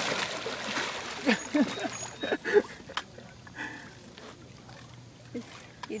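A large hooked flathead catfish thrashing at the water's surface near the shore. A burst of heavy splashing in the first second is followed by a few smaller splashes, which die down after about three seconds.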